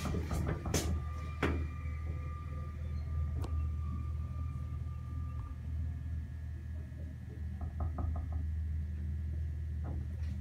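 Old Staley traction elevator, a steady low hum with a thin high tone over it for the first half. Sharp clicks come in the first second or so and once more at the midpoint, and a quick run of about eight ticks comes around eight seconds in.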